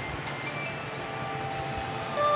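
Background music of the serial's romantic score: held, sustained notes, with a new set of notes coming in a little under a second in.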